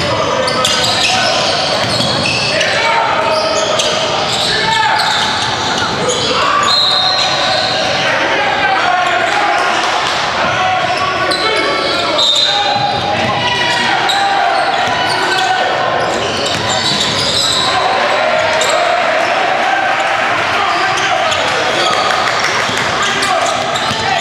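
Basketball being dribbled on a hardwood gym floor during a game, over a continuous hubbub of indistinct voices from players and spectators.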